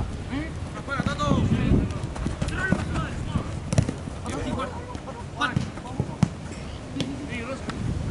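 A football being kicked on an artificial-turf pitch: several sharp thuds of foot on ball, the loudest a little under halfway through and again about three quarters in. Players' shouts and calls run around them.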